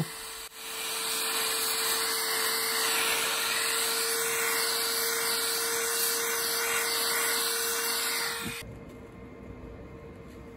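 Air rushing through a thin nozzle cleaning the pins of a CPU socket: a steady hiss with a constant motor whine underneath, cutting off about a second and a half before the end.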